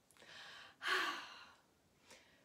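A woman breathing in, then letting out a louder sigh with a slight voiced edge about a second in; she is upset.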